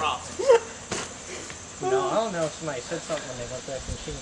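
Steady high-pitched chirring of crickets, with people's voices talking in short stretches and a single sharp click about a second in.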